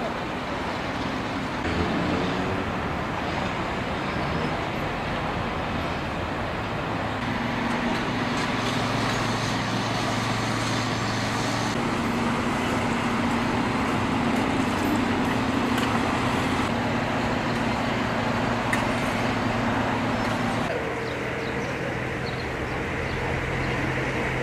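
Steady road traffic noise from cars driving on the city streets, with a low engine hum through the middle stretch. The background changes abruptly about 21 seconds in.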